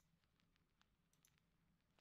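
Near silence, with a few faint clicks from computer input.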